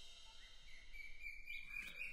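Faint outdoor background noise with a few short, high bird chirps near the end.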